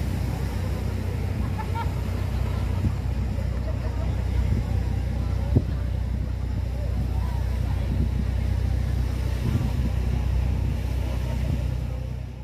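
Outdoor seaside ambience: a steady low rumble of wind on the microphone and surf, under faint chatter from a crowd of visitors. One sharp click comes about five and a half seconds in.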